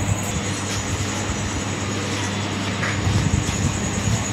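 A steady rushing noise with a low hum underneath, even throughout with no distinct knocks or clicks.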